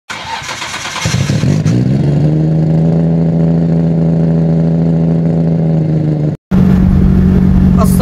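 A car engine starting and revving up over about a second, then holding a steady drone. It cuts off briefly near the end, and a steady engine hum inside a moving car's cabin follows.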